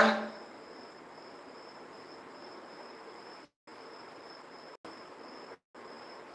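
A faint, steady high-pitched trill over low hiss, cutting out to silence three times briefly in the second half.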